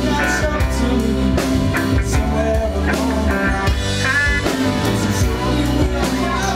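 A live rock band playing a full, steady passage with piano, electric bass, electric guitar, drum kit and saxophone.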